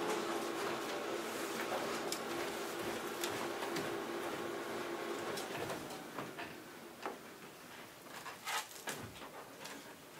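A steady machine hum with a noise haze, such as a printer or air-handling unit running, fades out about six seconds in. It is followed by scattered soft clicks and rustles of papers being handled at the table.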